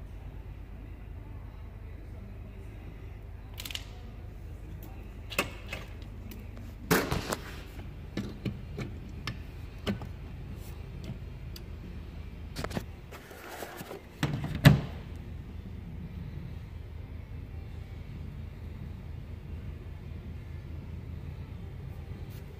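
Hands handling a grain scale and a Labtronics grain moisture meter, turning its selector knob while setting it up to test soybeans: scattered clicks and knocks over a steady low hum, the loudest knock about fifteen seconds in.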